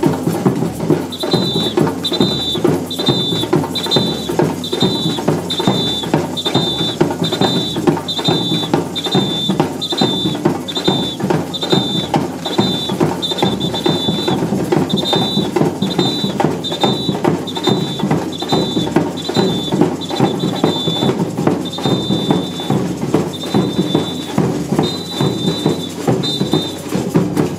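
Samba bateria playing: big surdo bass drums and snare drums beating a steady samba groove, with a shrill two-tone whistle blown in short blasts about twice a second, thinning to slower blasts near the end.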